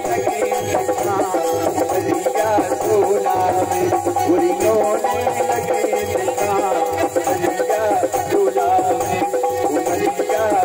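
Live Indian folk music: a hand-held wooden frame with metal jingles is shaken in rhythm under a sustained melody and singing.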